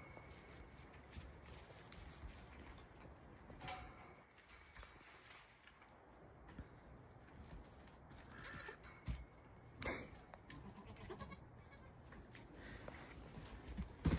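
Faint, occasional bleats of young goat kids, with a few soft thuds and one sharp knock about two-thirds of the way through.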